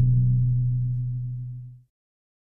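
The last low note of a logo jingle, held steady and fading, then cut off sharply near the end.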